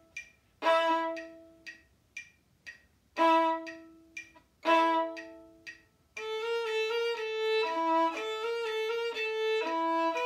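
Violin playing short, loud chords that ring and die away, with a metronome clicking about twice a second in the gaps. About six seconds in, it breaks into a continuous run of quick bowed notes.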